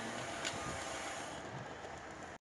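Wheels of a hand-pushed rail trolley rolling along the railway track: a steady running noise with a single sharp click about half a second in.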